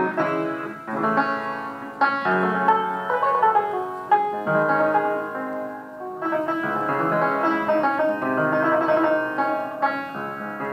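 1787 Broadwood square piano being played: a continuous passage of melody and chords with clear note attacks. Its original board over the strings is in place, which damps the instrument's harsher partials.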